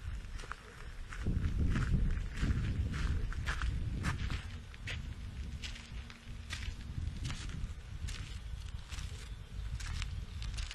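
Footsteps on a dirt trail, a string of irregular crunching steps, over a low rumble that sets in about a second in.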